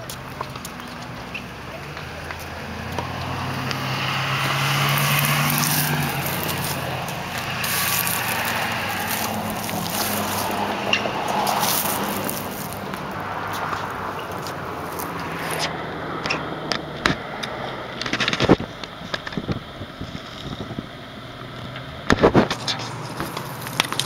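Handling noise from a handheld camera rubbing against clothing as it is carried, with a cluster of sharp clicks and knocks in the last few seconds. A low steady hum swells and fades between about three and six seconds in.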